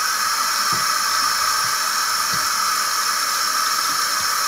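Bathroom sink tap running, a steady stream of water splashing into the basin with an even hiss.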